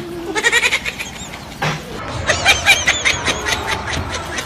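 A person's high-pitched voice making short, quick, wavering cries: a brief bout near the start and a longer rapid run from about halfway through.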